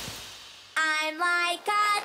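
A cartoon wave-wash sound fades away over the first half-second. Then a young girl's cartoon voice makes three short held tones, straining as she pulls a starfish off her face.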